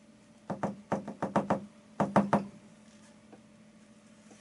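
A bristle brush dabbed hard against a stretched acrylic canvas, making two quick runs of sharp taps, about ten in all, with a short pause between the runs.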